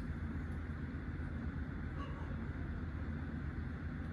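Steady low background rumble, even throughout, with a faint light click about two seconds in.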